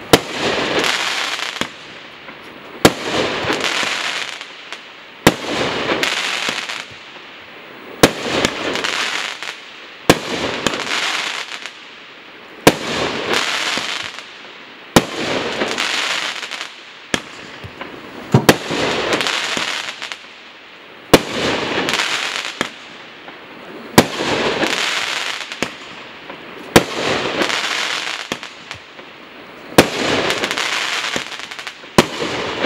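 A multi-shot firework cake firing one shot after another, a sharp report about every two to three seconds, about a dozen in all. Each report is followed by a second or so of crackling as the stars burst and fade.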